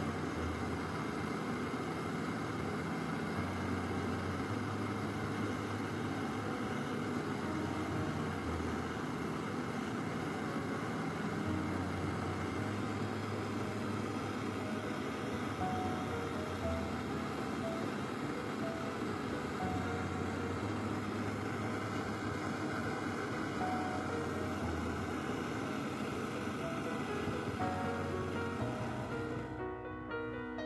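Steady rushing hiss of a gas brazing torch flame on copper refrigerant tubing, under background music with slowly changing bass notes. The torch noise stops just before the end, leaving the music alone.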